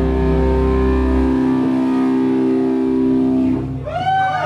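Distorted electric guitars holding a sustained chord through amplifiers, a steady ringing drone. The lowest notes drop out about a third of the way in and come back briefly, and the whole chord cuts off just before the end.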